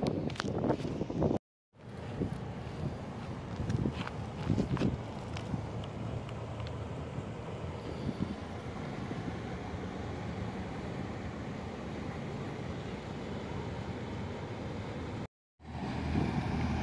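Steady outdoor wind noise on a phone microphone, with a few handling knocks in the first seconds; the sound drops out to silence twice, briefly, at edit cuts.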